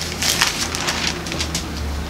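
Thin Bible pages rustling and crackling as they are leafed through, a quick run of crisp crackles in the first second and a half.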